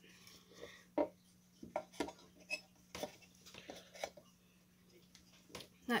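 Irregular light clicks and taps of a graphics card's fan cooler being handled and lined up onto the card's circuit board, parts knocking together as they are pressed into place.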